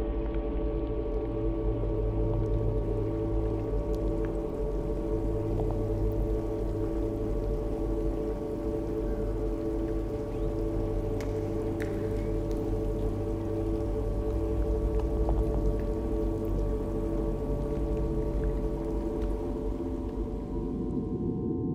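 Ambient drone soundtrack: several sustained tones held steady over a low hum, unchanging throughout, with a few faint scattered clicks.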